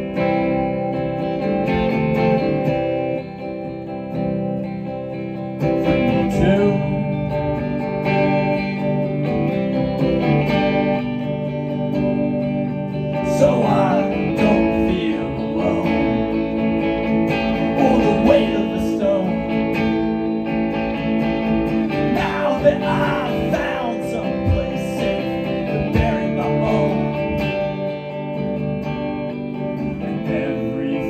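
Electric guitar played live, ringing chords strummed throughout, with a man's singing voice coming in over it at times.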